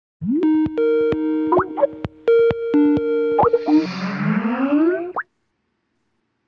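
Short comic title jingle: held notes broken by sharp clicks and quick upward swoops, building into a swirl of several rising tones before cutting off abruptly about five seconds in.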